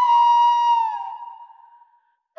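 Flute holding one long note in devotional music, the note dipping slightly in pitch about a second in and then fading away.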